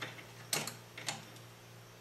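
Light metallic clicks of needle-nose pliers and the dial-drive chain against the steel chassis of a National NC-300 tube receiver, about four sharp ticks in the first second or so, over a low steady hum.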